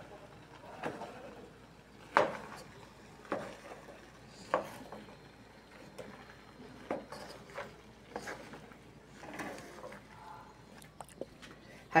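Wooden spatula stirring chopped zucchini and tomato in a pan: quiet, irregular scrapes and knocks against the pan, a stroke every second or so.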